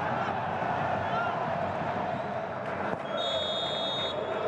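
Stadium crowd noise from a football match, then, about three seconds in, the referee's whistle sounds one long, steady blast: the final whistle.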